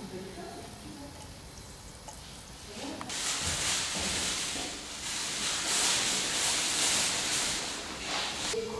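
Faint voices in the first second, then a loud, uneven hiss that starts abruptly about three seconds in and runs on until just before the end.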